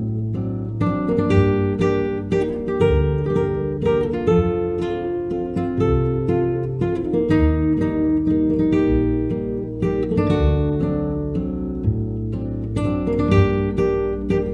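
Instrumental background music: acoustic guitar playing plucked and strummed chords over low bass notes, with no singing.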